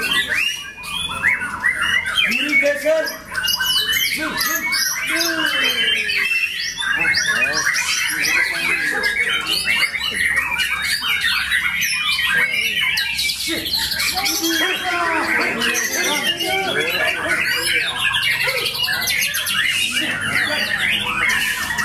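White-rumped shama (murai batu) song among many caged songbirds singing at once: a dense, unbroken tangle of quick sweeping whistles and chirps.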